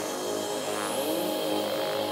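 Dark psytrance in a breakdown: the kick and bass are out, leaving sustained synth tones with sweeping synth effects, one rising steeply to a very high pitch about a second in.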